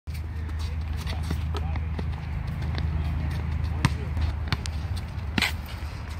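Basketball bouncing on an outdoor hard court: a string of irregularly spaced sharp bounces as it is dribbled, over a steady low rumble.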